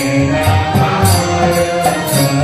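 Devotional chanting sung to music, with held notes and a steady rhythm of bright percussion strikes a few times a second.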